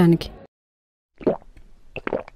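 A short wet gulp from a glass, about a second and a quarter in, after a brief dead silence, with a small click near the end.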